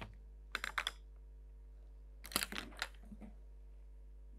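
Pencil and drafting instruments clicking and scratching on paper on a drawing board, in two short bursts of quick clicks: one about half a second in, one around the middle.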